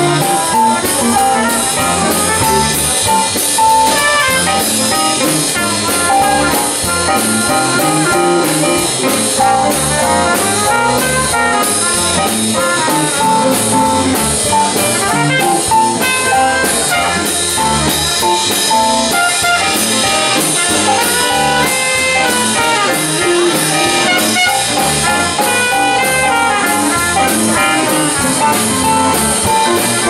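Live jazz combo playing a blues: trumpet and saxophone play the melody together over keyboard, with a cymbal keeping a steady swing beat.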